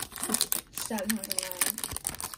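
Foil wrapper of a 2023 Topps Series 2 baseball card pack crinkling and tearing as it is pulled open by hand, a run of quick crackles.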